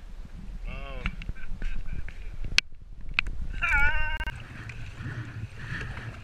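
Two short pitched cries, the second dipping in pitch and then holding. After them comes the steady swish of water and wind as a kayak is paddled across open water.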